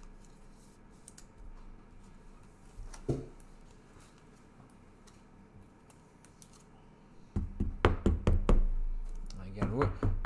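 Several knocks and thumps on a tabletop in quick succession starting about seven seconds in, after a quiet stretch broken by one soft knock about three seconds in.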